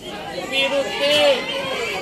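High-pitched voices shouting and calling out, with the loudest call about a second in.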